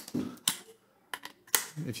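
A few sharp clicks and taps as a cheap quick-release clamp on a boom pole is worked and snapped into place, the loudest click about one and a half seconds in.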